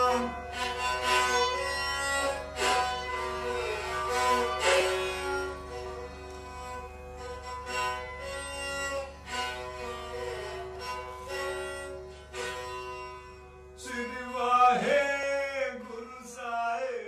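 Indian classical music on strings: plucked notes ringing over a steady drone, with a voice gliding in near the end.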